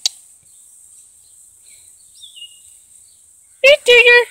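Baby squirrel squealing in distress while held in a cat's jaws: a rapid run of loud, high-pitched squeals, about five a second, starting near the end. A faint short chirp comes before it.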